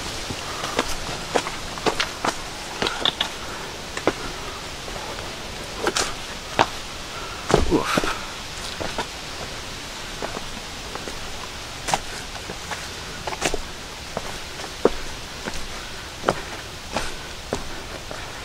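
Footsteps of a hiker walking on a leaf-covered, rocky forest trail: irregular crunches and scuffs over a steady background hiss.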